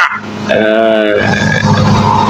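A person's brief wordless vocal sound, a short pitched note lasting under a second, followed by a low rumbling noise.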